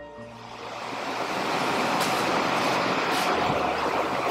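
Audience clapping builds over the first second or so and then holds steady, with soft sustained keyboard music underneath.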